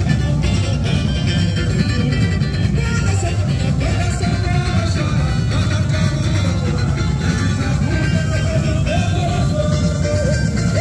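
Samba parade music, loud and steady: dense drumming with a voice singing a melody over it.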